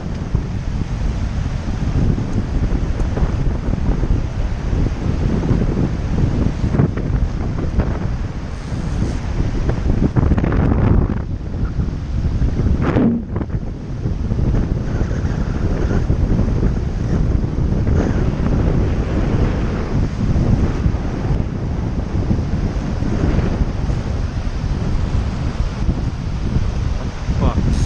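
Strong wind buffeting the microphone in gusts, over the rush of shallow river current, easing briefly about halfway through.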